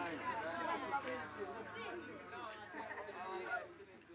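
A group of children's voices chattering and calling out over one another, fading away toward the end.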